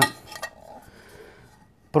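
Metal military canteen cup being handled, with a few light clicks and clinks in the first half-second, then faint rubbing and rustling as it is turned in the hands.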